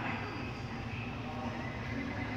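Seoul Subway Line 7 train approaching the underground platform: a steady rumble that carries through the station.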